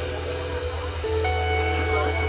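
Live band playing an instrumental passage without vocals: a steady bass line underneath, with held higher notes coming in about a second in.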